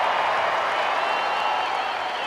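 Large stadium crowd applauding steadily.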